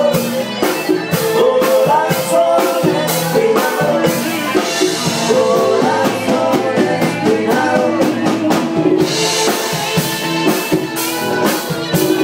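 Live Latin band playing, a drum kit keeping a steady beat under the other instruments.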